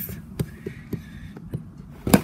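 Faint handling of a cardboard box, with a few light clicks, as a pocket knife is brought to its seal.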